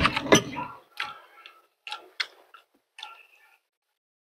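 A person chewing close to the microphone, with wet lip smacks and sharp mouth clicks. The clicks come thick in the first second, then singly about a second apart, and stop a little before the end.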